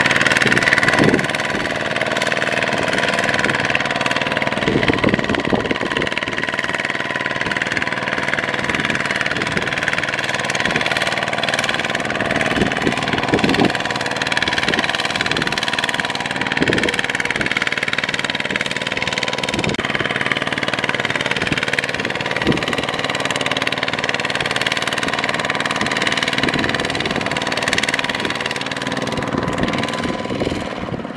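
Kubota ZT155 power tiller's single-cylinder diesel engine running steadily as the tiller pulls its trailer through sticky mud, with occasional knocks.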